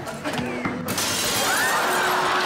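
A sudden crash of shattering glass about a second in, its noisy wash carrying on to the end, over music.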